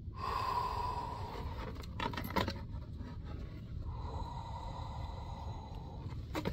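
A man sighing with a long breath out, then a few short handling clicks about two seconds in, and another long breath out near the end.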